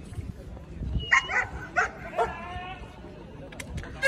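A dog barking a few short times, a little after a second in, over the murmur of a crowd.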